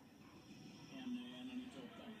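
Faint speech from a television: a sports commentator's voice, heard in the room through the TV speaker.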